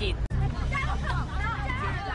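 A group of boys' voices talking over one another in indistinct chatter, starting about half a second in.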